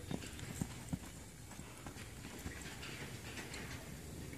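Hoofbeats of a young horse moving around a sand arena on a lunge line, with a few sharper strikes about half a second apart in the first second, then softer, uneven ones.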